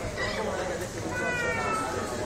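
Crowd chatter, with a short high tone that dips slightly in pitch about a second in.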